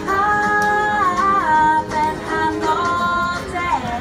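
A woman singing a children's action song, holding long notes with a few slides in pitch.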